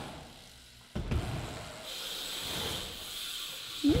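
BMX bike riding on concrete ramps: a sharp knock about a second in, then tyres rolling on the concrete with a steady high hiss.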